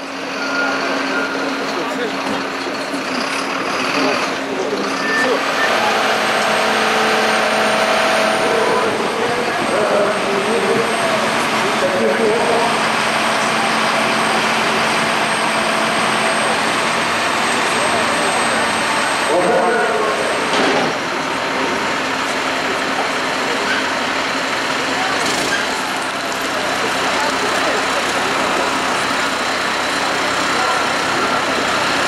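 Diesel engine of a Magirus aerial ladder fire truck running steadily while it powers the ladder and rescue basket up the side of a building. Voices are heard over it.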